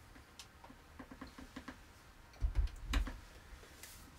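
Faint scattered clicks and taps of someone handling things off to the side, with a couple of low thuds about two and a half to three seconds in and a sharp click just before the end.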